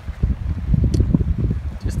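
Wind buffeting the microphone: an uneven, gusting low rumble, with a couple of faint clicks about a second in and near the end.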